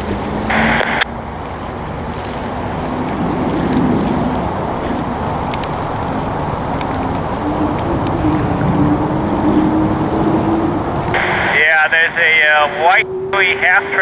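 Turbine-powered unlimited hydroplane running at speed across the river, a distant steady whine that rises slowly in pitch, heard under heavy wind noise on the microphone.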